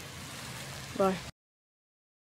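A steady outdoor background hiss with a single spoken "bye", then the sound cuts off abruptly to dead silence about a second and a half in, as the recording ends.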